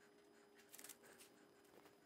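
Near silence with faint handling noise: a silicone rubber mold being flexed and pried open by hand, with one short rubbing rustle a little under a second in.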